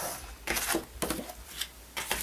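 Sliding paper trimmer's blade carriage drawn along its rail, cutting through a sheet of cardstock: a dry scraping sound broken by a few short clicks.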